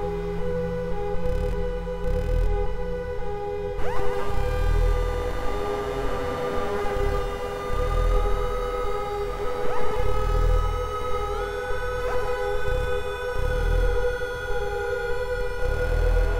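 Soma Lyra-8 analog synthesizer playing a dark, sustained drone of several layered tones over a slow low pulsing throb, with sweeps rising in pitch about four and ten seconds in.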